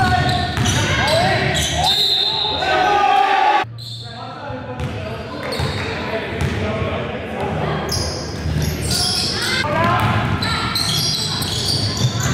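Live basketball game sound in a large gym: players' voices calling out and a basketball bouncing, echoing in the hall. The sound drops abruptly about three and a half seconds in, then the same court noise goes on more quietly.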